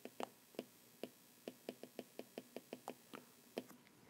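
Faint, quick, uneven taps and clicks of a pen stylus on a tablet surface as a short phrase is handwritten, about five a second.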